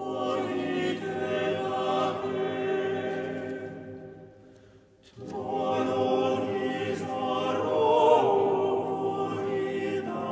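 Chamber choir singing a cappella: a held chord of many voices that fades almost to nothing about four and a half seconds in, then a new chord that enters sharply about five seconds in and swells to its loudest around eight seconds.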